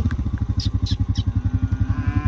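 Vehicle engine idling with a rapid, even pulse.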